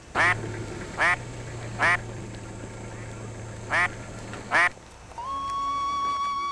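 A duck quacking: three short, loud quacks about a second apart, a pause, then two more, over a low steady hum. Music begins near the end.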